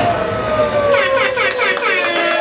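Loud live hip-hop club sound: a long held tone that slowly falls in pitch, over a dense mix of music and crowd. From about a second in, quick swooping sounds repeat about four times a second.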